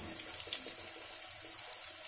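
Sliced onions and mustard seeds frying in hot oil in a pot, a steady sizzle.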